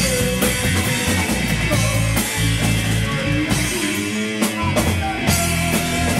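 Rock band playing live in a rehearsal room: drum kit, electric bass and electric guitar together. The bottom end drops out briefly just past four seconds in, then the full band comes back.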